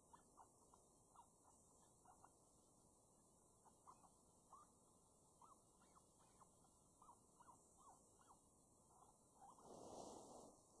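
Faint, short, irregular squeaks, about two a second, from a FoxPro electronic predator caller playing a rodent distress call.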